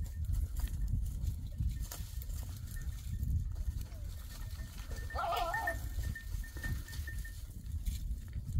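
A goat herd on a rocky slope, with one goat bleating once about five seconds in, over a steady low rumble and scattered small clicks.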